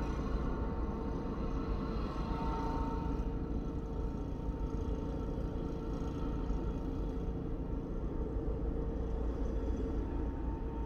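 Steady low rumble with a constant hum, as of a parked car idling, heard from inside its cabin.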